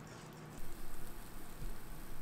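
Faint sizzling of sourdough pancake batter frying in oil in a cast-iron skillet, a soft steady hiss that comes up about half a second in.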